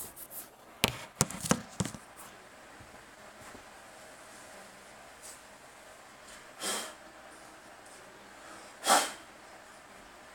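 Handling noise from unpacking packaging and figure parts: a quick run of sharp clicks and knocks about a second in, then two short noisy swishes later on.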